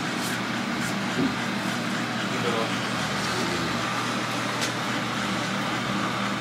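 Steady background hum with an even hiss, broken by a few faint clicks.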